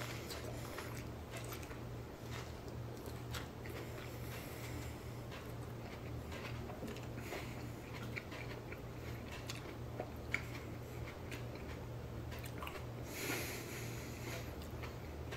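Faint chewing of a raw giant white habanero pepper: soft wet mouth clicks scattered throughout, one sharper click a little after ten seconds, over a steady low hum.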